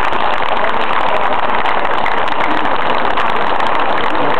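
Audience applauding, a dense steady clatter of clapping with some voices mixed in, just after the choir has finished singing.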